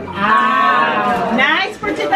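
A long, drawn-out vocal exclamation, held with a wavering pitch, then a short rising cry about a second and a half in.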